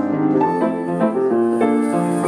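Grand piano played four hands in a gentle, flowing lullaby, note after note in a steady run. About half a second in, a soft, steady high shaker hiss from hand percussion joins it.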